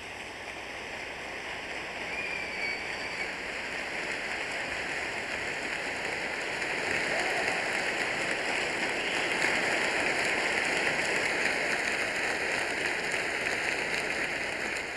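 Concert audience applauding, building steadily louder, with a brief whistle about two seconds in.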